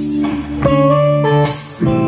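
Live blues-rock band playing an instrumental passage: electric guitars ringing out chords over a bass guitar line, with no singing. The chords change a few times, and a bright percussive hit lands at the start and again about one and a half seconds in.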